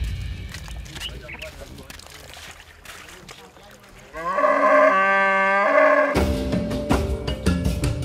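A cow moos once, one long call of about two seconds starting about four seconds in, rising at first and then holding. Background music is faint before the call and comes back loud with percussive hits as soon as it ends.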